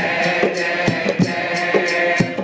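A man singing a Hindu devotional aarti with harmonium accompaniment, over repeated percussion strokes.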